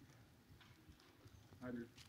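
Near silence: room tone, with a brief faint voice from across the room near the end.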